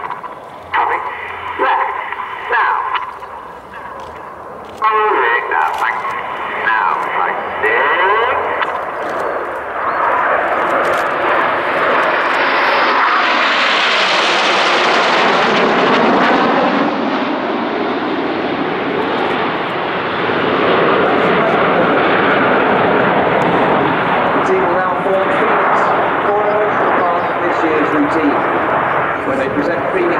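Formation of BAE Hawk T1 jets flying past with their Rolls-Royce Adour turbofans. The jet noise rises from about ten seconds in, is loudest a few seconds later as the formation passes, and stays loud after that.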